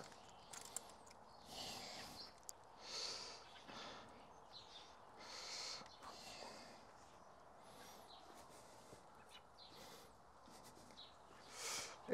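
Near silence: quiet outdoor background with a few faint, short, soft rustling noises.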